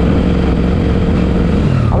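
Suzuki Gixxer SF motorcycle's single-cylinder engine running steadily under way, over a heavy low rumble of wind on the microphone. Near the end the engine note drops as the throttle is eased off.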